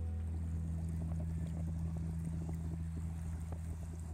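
A steady low hum of a few fixed low tones, under a faint crackling, rushing noise.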